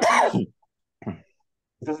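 Speech in Spanish over a video call, broken by a short vocal sound about a second in, with talk resuming near the end.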